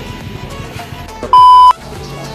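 A single loud, steady electronic beep lasting under half a second, about two-thirds of the way in, over quiet background music.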